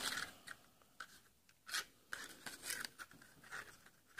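Faint, brief rustles and scrapes of a small piece of white cardstock being slid about inside a hand-held plastic oval paper punch while it is lined up, a few separate scuffs with quiet between them.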